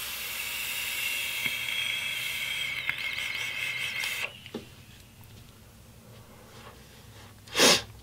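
A drag on the Ambition Mods C-Roll single-coil dripping atomizer: the fired coil sizzling and air hissing through the airflow for about four seconds, cut off suddenly. After a quiet pause, a short breathy exhale comes near the end.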